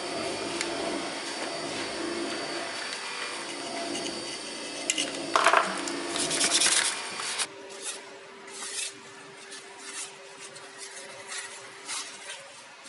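Wire brush scrubbing a steel axe head: a steady scratching, with louder rasping strokes around five to seven seconds. It stops abruptly about seven seconds in, leaving only soft, scattered rubbing over a faint steady hum.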